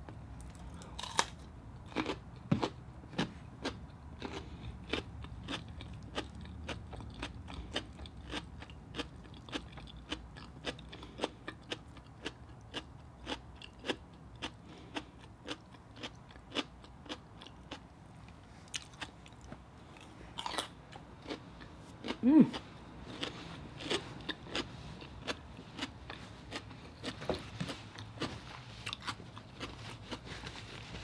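Raw radish being bitten and chewed with the mouth, a steady run of crisp crunches about two a second, with a short 'mm' about two-thirds of the way through.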